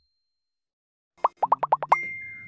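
Silence, then about a second in a quick run of about six cartoon pop sound effects, each a short upward blip, in rapid succession.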